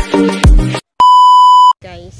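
Electronic intro music with a heavy kick-drum beat stops a little before halfway. After a brief silence, a single loud, steady, high beep sounds for under a second, and it cuts off just before a voice and outdoor background start.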